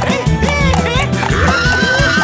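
Background music with a steady beat, with a cartoon horse neighing over it.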